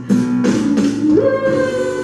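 A soul song performed live: a woman singing into a microphone over a backing track of guitar and a beat about twice a second. About a second in, a note slides up and is held.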